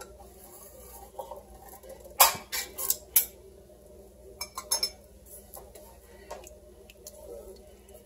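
A few sharp metallic clinks and knocks of cookware and kitchen utensils, the loudest about two seconds in, with fainter ones scattered after it.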